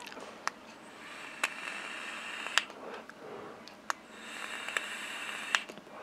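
Two quiet draws on a Joyetech Exceed Edge pod vape while it is on charge, each a soft hiss of air through its narrow mouth-to-lung air hole lasting about a second and a half, with light clicks of handling between them: a test of whether it fires in pass-through mode while charging.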